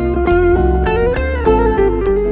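Live jazz played on electric guitars: picked single notes ring over held chords, with a melody line that climbs and a low bass part underneath.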